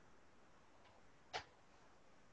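Near silence: faint room tone with a single short click about a second and a half in.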